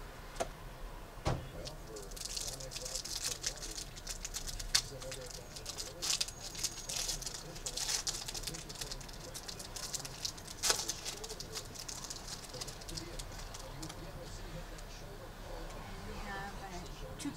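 Plastic wrapper of a hockey trading-card pack being torn open and the cards handled: crinkling, densest for the middle several seconds, with scattered sharp clicks and snaps.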